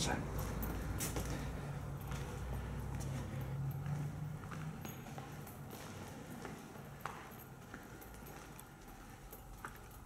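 Faint footsteps and a few soft knocks as someone walks through a doorway into a quiet church, over a low steady hum that fades away about halfway through.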